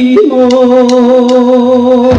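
Male singer holding one long, steady note at full voice with a band, with light percussion taps about every half second beneath it.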